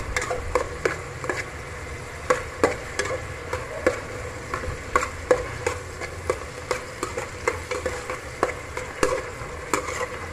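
Metal spoon stirring and scraping chopped onions around an aluminium pot as they sauté, with irregular clinks against the pot wall over a faint sizzle of frying.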